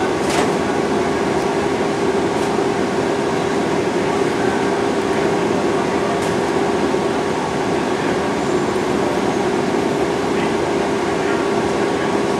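Steady cabin drone inside a slowly moving transit vehicle, with a constant low hum running under it.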